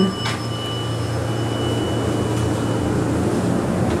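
Elevator cab ventilation fan running with a steady low hum and a faint thin whine over it, and one brief click just after the start.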